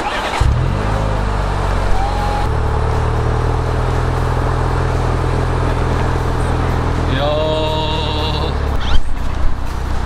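BMW Z4 20i's four-cylinder petrol engine idling steadily.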